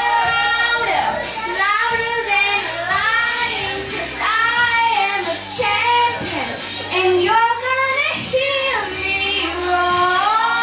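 A young girl singing a pop song into a microphone over backing music.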